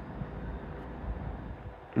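Faint, steady low background rumble and hiss with no distinct events.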